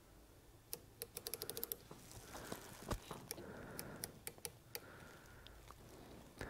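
Faint small metal clicks from an outside micrometer being closed on a telescoping gauge held in a bench stand: a quick run of about ten clicks about a second in, a soft knock, then scattered single clicks.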